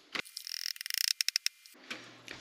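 Light rustling and a quick run of about eight small taps as baking soda is measured into a plastic mixing bowl on a kitchen scale.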